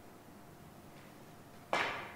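One sharp clack of a cue tip striking the cue ball on a three-cushion carom billiards table, about 1.7 seconds in, a hard shot with a short ring after it.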